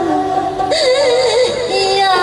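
A woman singing a Bhawaiya folk song, her voice wavering with vibrato, with instrumental accompaniment.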